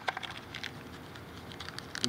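Packaging being handled: light clicks and crinkles from a plastic zip bag and a cardboard box tray, clustered in the first second, then only faint rustling.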